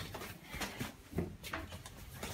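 Quiet, soft footfalls of bare feet walking down tiled stairs, a few dull thumps.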